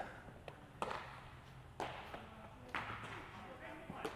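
A few faint thuds and knocks echoing in a large indoor hall, over low room noise.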